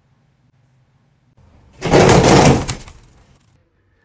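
A loud, noisy crash-like clatter about halfway through, lasting about a second and fading out, after a stretch of near quiet with a low hum.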